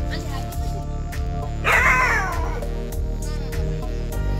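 Background music plays throughout. About a second and a half in, a dog gives a loud whine that falls in pitch and lasts about a second.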